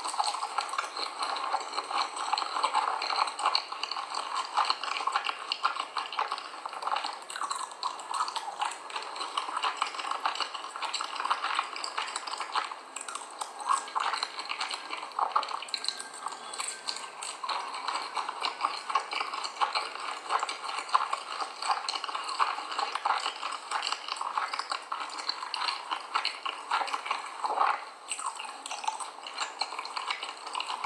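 Dry corn starch being chewed close to the microphone: a dense, continuous fine crackling crunch.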